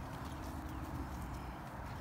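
Footsteps of several people walking on grass and gravel, soft and faint over a low rumble.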